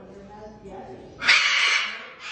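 Hyacinth macaw giving a loud, harsh, raspy squawk a little over a second in, lasting under a second, after softer voice-like sounds.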